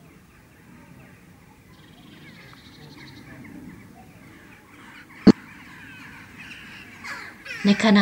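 Faint bird calls, including harsh crow-like cawing, with a short rapid trill about two seconds in. A single sharp click about five seconds in is the loudest sound.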